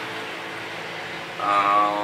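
Steady background hiss of room noise, then near the end a man's voice holds a drawn-out, level hesitation sound.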